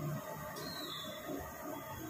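Medu vada sizzling in a wide pan of deep-frying oil, a steady hiss, while a wire-mesh skimmer is moved through the oil.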